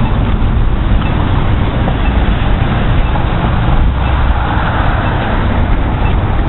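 Outdoor street noise: a steady rumble of traffic mixed with wind buffeting the microphone, with a swell of hiss about four seconds in.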